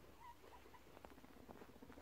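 Faint guinea pig sounds from a male in a dominance dispute: a few short, high squeaks near the start, then a low, rapid pulsing like a guinea pig's rumble, with light pattering of small feet on a towel.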